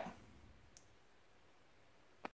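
Near silence: faint room tone after the last word trails off, with one tiny click about three quarters of a second in.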